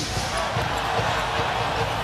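Steady arena crowd noise during live basketball play, with a basketball being dribbled on the hardwood court.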